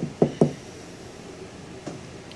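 Three quick, dull knocks in the first half second, then a single fainter knock near the end, over a steady low room hum.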